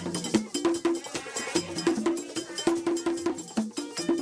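Live Haitian Vodou ceremony music: fast, even strokes on a bell-like metal percussion instrument over drums, with a saxophone playing short repeated notes.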